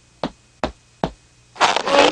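Cartoon footsteps: a few sharp steps on a hard floor about 0.4 s apart. Near the end comes a loud rustling scrape as a heavy body squeezes into a curtained voting booth.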